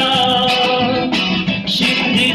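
Acoustic street music: a strummed acoustic guitar and a plucked long-necked saz (bağlama) over a steady strummed beat, with a large frame drum in the ensemble.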